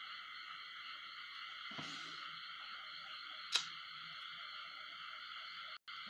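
Steady background hiss with a single sharp click about three and a half seconds in, and a brief cut-out in the sound near the end.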